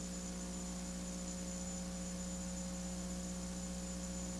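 Steady low electrical hum with a faint hiss underneath, unchanging throughout; no other sound stands out.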